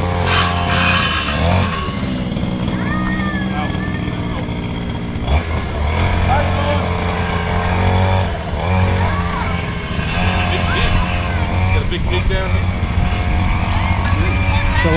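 A small motorbike engine running steadily at low speed as it rolls along and slows to a stop, its note dipping briefly about five seconds in.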